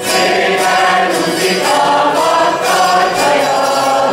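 Mixed choir of men and women singing a Hungarian folk song, accompanied by citeras (Hungarian zithers); the voices come in right at the start.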